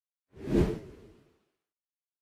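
A single whoosh sound effect with a low rumble under it. It swells up about a third of a second in, peaks just after half a second and fades away within about a second.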